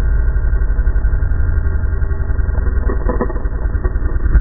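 2001 KTM 380 MXC two-stroke single-cylinder engine running steadily with the bike down after a crash, with a short clatter about three seconds in.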